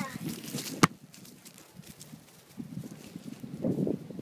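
A ball kicked once, a single sharp thud about a second in, followed by soft, irregular running footsteps on dry grass.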